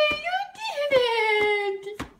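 Infant vocalizing: two long, high-pitched squeals, the first ending about half a second in, the second sliding slowly down in pitch until it stops near the end.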